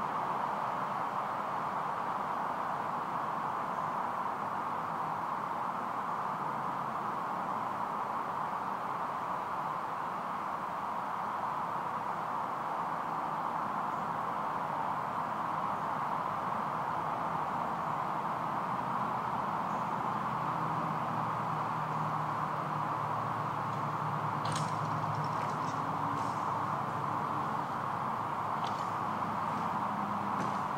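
Steady, even background noise with no distinct source, with a few faint clicks near the end.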